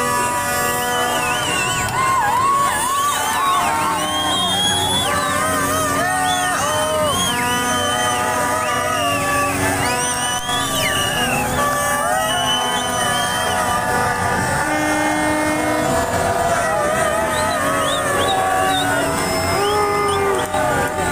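Street celebration din: many car horns honking at once in overlapping held tones, over a crowd shouting and chanting.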